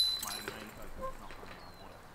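A disc golf putt striking the chains of a metal chain basket: one sharp clank with a high metallic ring that dies away within about a second, the putt holing out for par.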